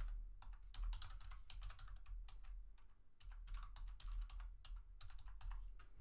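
Typing on a computer keyboard: a run of quick, irregular key clicks as text is entered, over a low steady hum.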